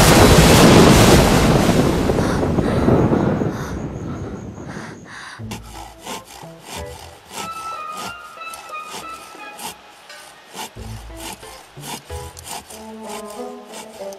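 Fight sound effect of a body thrown and skidding across bare dirt: a sudden loud rush of scraping noise that fades away over about four seconds. After it, soft music with a few held notes and a scatter of light clicks.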